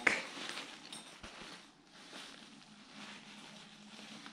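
Faint rustling of a fuzzy fleece backpack being handled and turned over, with a few light clicks in the first second or so.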